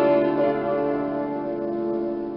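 Piano chord held and slowly dying away, with one more note struck about half a second in.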